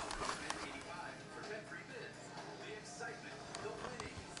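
Faint, indistinct background speech with music beneath it, and a few light clicks.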